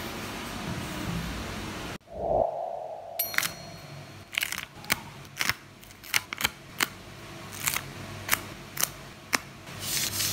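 A pen drawing a line along a plastic ruler on paper, a steady scratchy stroke. After a sudden cut there is a short, falling tone. Then come sharp, irregular clicks and ticks as tweezers pick a small sticker off its clear plastic backing sheet.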